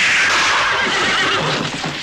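Horse whinny sampled into a breakbeat track, falling in pitch over about two seconds while the drum beat has dropped out.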